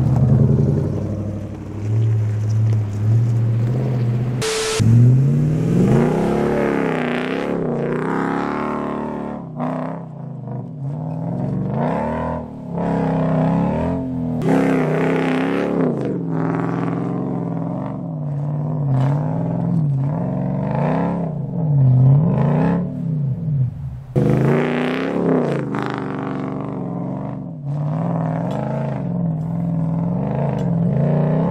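Toyota LandCruiser V8 engine revving up and down repeatedly in low range as the 4WD climbs a soft, rutted sandy track, the revs rising and falling every second or two as the driver works the throttle for traction.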